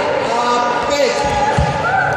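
People doing frog jumps on a sports hall floor: dull thuds of feet landing, the strongest over a second in, under several people's voices echoing in the hall.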